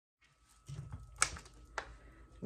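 Two sharp clicks over faint room tone, about half a second apart, the first one louder.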